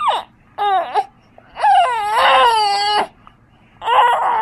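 Three-month-old baby cooing in high-pitched vowel sounds: a short coo, then a longer one of more than a second that wavers in pitch, and another starting near the end.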